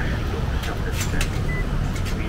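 Busy street ambience: a steady low rumble with indistinct crowd voices and a few sharp clicks.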